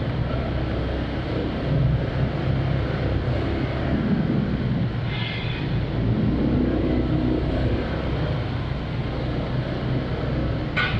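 A motorcycle engine running steadily at low speed, with a brief hiss about five seconds in.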